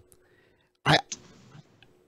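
A pause in conversation broken about a second in by one short, clipped vocal sound from a man, a cut-off "I" with a hiccup-like catch.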